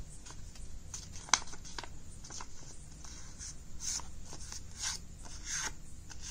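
A sheet of paper crinkling and rustling in short, scattered rustles as a paper triangle is folded in half and creased by hand, with one sharp crackle a little over a second in.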